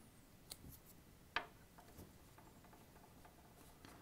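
Near silence with a few faint, sharp metallic clicks, the clearest about a second and a half in. They come from a small Phillips screwdriver tightening a post screw on a rebuildable atomiser deck while the deck is handled.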